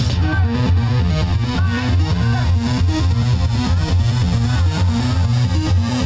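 Loud electronic music with distorted, effects-laden synthesizer sounds over a pulsing, repeating bass line.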